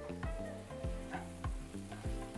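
Shredded savoy cabbage and onion frying quietly in butter in a frying pan, sizzling as a spatula stirs them, with soft background music underneath.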